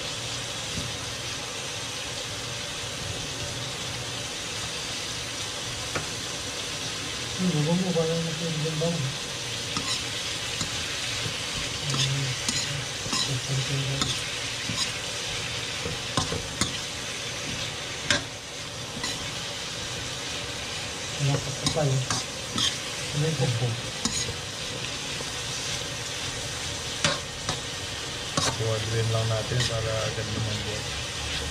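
Julienned carrots and onion sizzling in an aluminium wok, stirred with a metal spatula that scrapes and clicks against the pan now and then.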